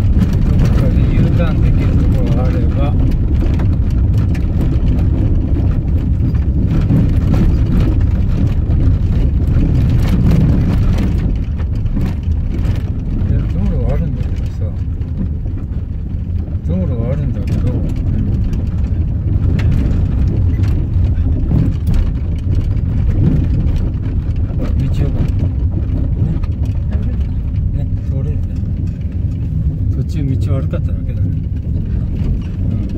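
Car cabin noise while driving on a gravel dirt track: a steady low rumble of engine and tyres, with frequent small ticks and crunches from stones under the tyres.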